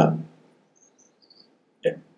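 A man's lecturing voice trails off on a word, followed by a pause of near silence with a few faint high-pitched chirps. A brief vocal sound comes just before the end as speech resumes.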